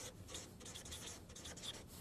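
Faint scratching of writing strokes in a series of short, light scrapes.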